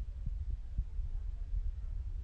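Low, uneven rumble with a few faint soft thumps, and no voices.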